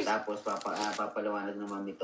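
A person talking over a video call, with a brief papery rustle or shuffle about half a second in.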